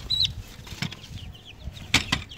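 Baby chicks peeping faintly, a short high chirp at the start and a scatter of soft peeps later, over handling rustle, with two sharp knocks, one about a second in and one near the end, as the chicks are lifted out of a wire cage.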